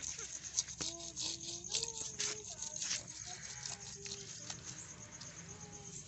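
Scales being scraped off a large grass carp by hand: a string of short scrapes and clicks at irregular intervals.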